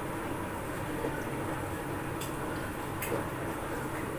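Steady low background hum of kitchen noise, with two faint light clicks a little past halfway.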